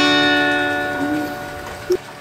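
End of a song: a strummed acoustic guitar chord rings out and slowly fades away.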